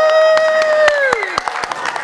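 A long, high-pitched held vocal cry ("ooh") that slides down in pitch and dies away about a second and a half in. An audience starts clapping about a second in and keeps clapping to the end.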